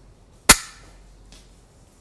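Slingshot hammer of a Daystate Huntsman Classic cutaway action released from cock: one sharp snap about half a second in as the hammer flies forward and strikes the valve, dying away quickly.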